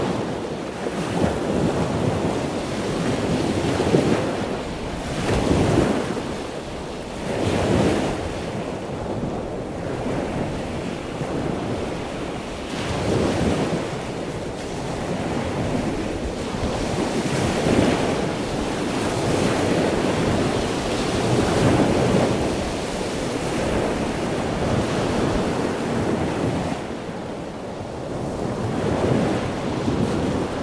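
Water rushing and churning in a sea turtle rehabilitation tank: a steady wash that swells and eases irregularly every second or two.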